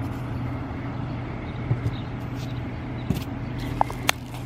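A steady low machine-like hum over outdoor background noise, with a few light clicks and taps.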